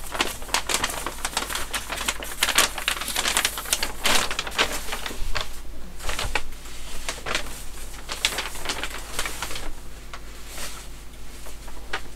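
A large bus-shelter poster sheet crinkling and rustling as it is unrolled and held up, a dense run of irregular crackles that thins out near the end.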